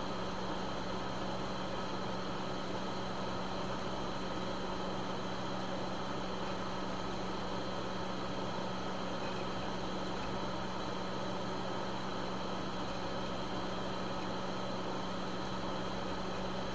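Steady room hum and hiss with a held low tone, unchanging throughout, and no other sounds.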